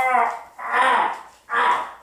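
A man's voice letting out three wordless "oh"-like cries in a row, each about half a second long, the last one short and cut off.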